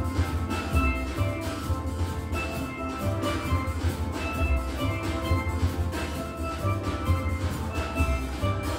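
Steel band playing: several steel pans ringing out pitched notes over deep bass pans, with a steady rhythm throughout.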